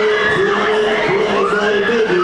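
Mack Berg-und-Talbahn fairground ride running at full speed, its cars rumbling round the undulating track, under loud ride music with long held notes and a wailing tone that rises and falls.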